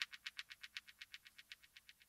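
Fade-out at the end of an electronic track: a rapid, even ticking from electronic percussion, about eight ticks a second, growing fainter and stopping just after the end.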